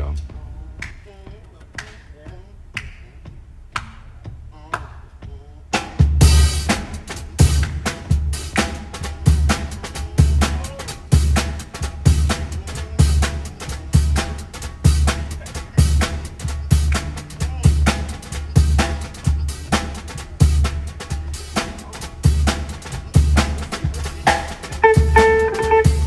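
Live jazz quartet of guitar, piano, bass and drums starting a swinging tune. The first seconds hold only soft, evenly spaced clicks. The full band comes in about six seconds in, with a steady bass-and-drum pulse, and a note is held near the end.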